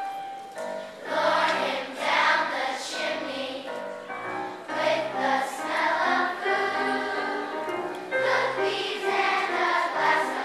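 Elementary school children's choir singing a song, held notes changing in melody throughout.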